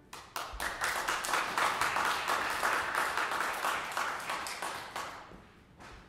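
Audience applauding, the clapping starting abruptly and then fading out about five seconds in.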